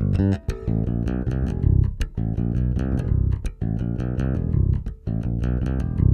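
Cort Artisan A5 Plus five-string electric bass played on its bridge pickup alone, through a Warwick Gnome iPro bass amp. It plays a continuous run of plucked notes with a few short breaks.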